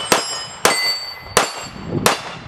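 Three shots from a Dan Wesson ECO .45 ACP compact 1911 pistol, a little over half a second apart. Each hit makes a steel plate target clang and ring briefly.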